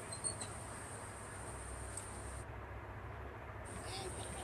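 Steady low rumble of an airliner cabin, with a brief high chirp about a quarter of a second in.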